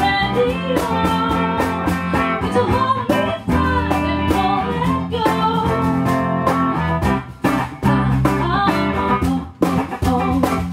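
Live band music: a woman singing into a microphone over electric guitar, electric bass and percussion, with a couple of brief breaks in the playing near the end.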